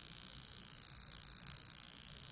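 A handheld electric facial wand working over the cheek: a steady high-pitched electrical whine with a few brief crackles. The device gives an electric tingle on the skin.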